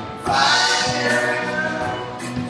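Live rock band playing electric guitars and drums, with voices singing together in held notes from about a third of a second in.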